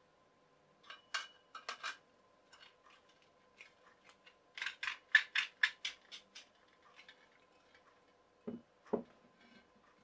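Chrome-wire caddy shelf and its clip clinking against a metal tension pole as they are handled and slid along it: a few sharp clicks, then a quick run of metallic clicks about halfway through, and two duller knocks near the end.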